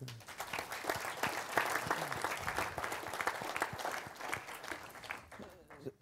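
Audience applauding: a dense patter of many hands clapping that thins out and fades away near the end.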